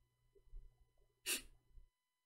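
A person's single short, sharp breath noise close to the microphone, about a second in, over faint room noise. The sound then cuts out to dead silence just before the end.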